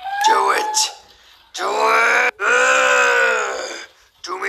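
A person's Donald Duck-style voice: a short garbled burst of duck-voice talk, then two long drawn-out groaning cries, the second one longer.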